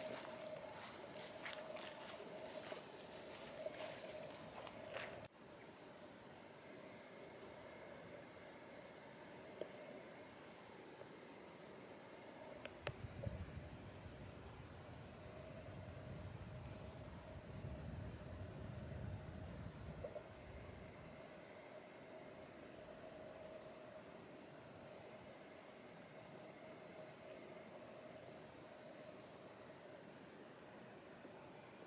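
Faint insects calling: a steady high-pitched buzz under a regular chirp that repeats about one and a half times a second. A low rumble comes in between about 13 and 20 seconds in.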